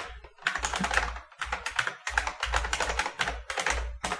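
Computer keyboard typing: a quick, uneven run of keystroke clicks as a line of text is typed.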